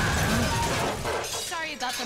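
Cartoon explosion sound effect with crashing, shattering debris, loud for about the first second and then dying away. A voice starts speaking near the end.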